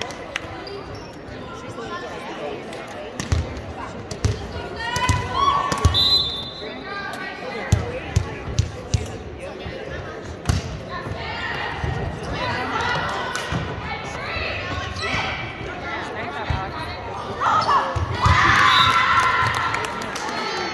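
A volleyball bouncing on the hardwood floor and being struck, a string of sharp knocks, among players' calls and shouts that grow loudest near the end, all echoing in a large gymnasium.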